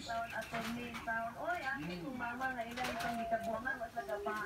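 Indistinct voices talking in the background, not close to the microphone, with a pitch that wavers and sometimes holds steady.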